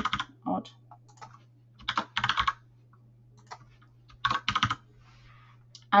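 Typing on a computer keyboard: two short runs of keystrokes, one about two seconds in and another past four seconds, over a faint steady low hum.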